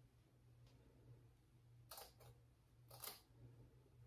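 A few faint snips of scissors cutting through the lace of a lace-front wig, two close together about two seconds in and another about a second later, over a low steady hum.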